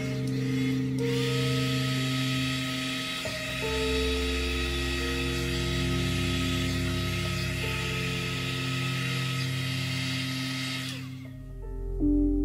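Handheld electric heat gun running with a steady hiss of blown air as it is played over wet resin to push the white wave lacing; it cuts off suddenly about a second before the end. Soft ambient music plays underneath.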